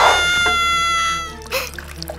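A loud, high-pitched squeal held at a steady pitch, stopping about a second and a half in, followed by quieter background music.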